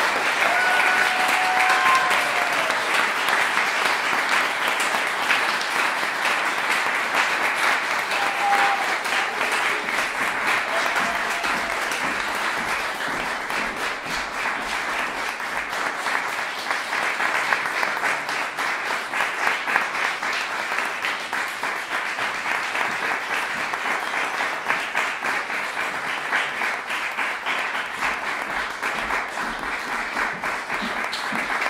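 Audience applause, sustained and dense, easing a little after about twelve seconds, with a few short pitched calls over it in the first ten seconds.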